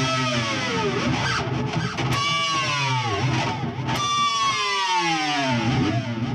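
Pinch-harmonic dive bombs on a Fender Player HSS Stratocaster with a Floyd Rose floating tremolo, played through high-gain distortion with delay. There are three high-pitched notes, each sliding steeply down in pitch as the tremolo arm is pushed down.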